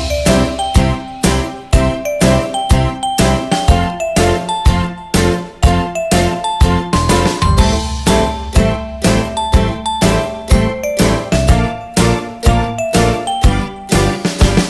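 Background music: a bright, bell-like jingling melody over a steady beat.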